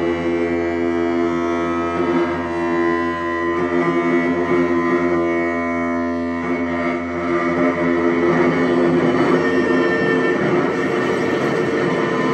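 Experimental electronic drone from effects pedals played through a small amplifier: a dense chord of steady held tones. From about halfway through, a rougher, grainy noise texture swells in under the tones.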